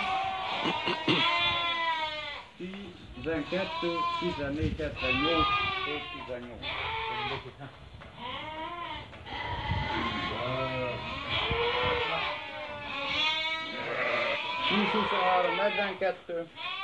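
A penned flock of sheep bleating, many calls overlapping one another with hardly a pause.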